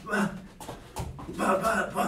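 A man voicing short "bah" sounds in time with his punches as he shadowboxes, with a single thud about a second in.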